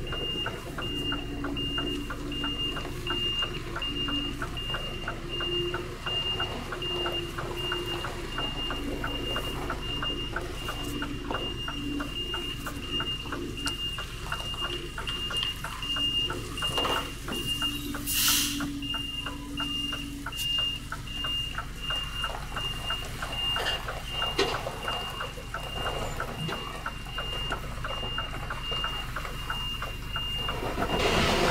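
Truck reversing alarm beeping steadily at an even rate over the low hum of the running engine, as the truck backs up to the loading dock. There is one sharp knock or clatter about halfway through.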